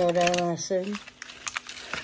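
A voice drawing out a word for about the first second. Then light crinkling and scattered clicks as a cardboard lid is lifted off a foil takeaway tray.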